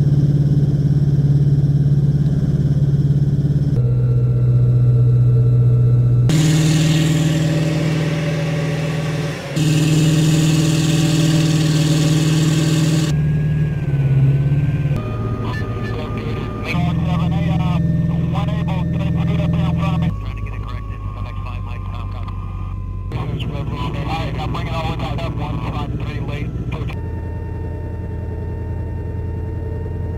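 Amphibious assault vehicle's diesel engine running under way at sea, a steady low drone that jumps in pitch and level at several abrupt cuts. A loud rushing noise rides over it for several seconds early on.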